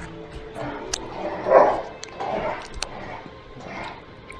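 A young German shepherd barking, with the loudest bark about one and a half seconds in, over background music.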